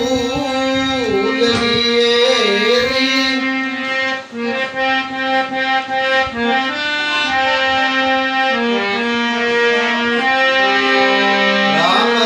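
A harmonium playing a bhajan melody in held, reedy notes that move from pitch to pitch. About four to seven seconds in, the notes turn shorter and choppier, then go back to longer sustained notes.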